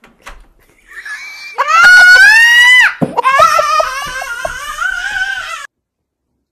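A child screaming: one long, very loud, high-pitched scream that rises in pitch, then a second wavering shriek. The sound cuts off abruptly near the end.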